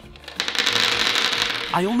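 A pile of gumballs being swept by hand out of a plastic toy playset's compartment, rattling and rolling out onto a tabletop in a dense clatter. It starts about half a second in and lasts about a second and a half.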